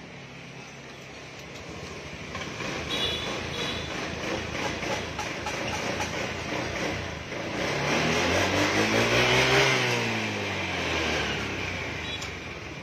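A motor vehicle engine over a steady noise of traffic. Its pitch and loudness rise to a peak about ten seconds in, then fall away, as when a vehicle passes or an engine is revved and let down.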